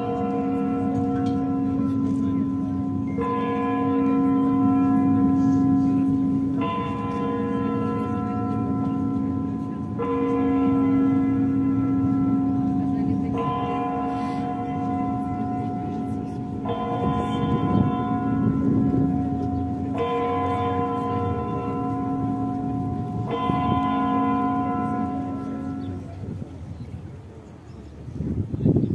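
A large church bell tolling in slow, even strokes, eight in all, about one every three seconds, its low hum sounding on between strokes. The tolling stops shortly before the end.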